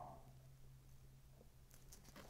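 Near silence: room tone with a faint steady low hum and a few faint ticks near the end.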